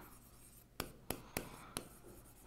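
A pen writing on an interactive display board: faint strokes with four short sharp taps in the second half as the letters go down.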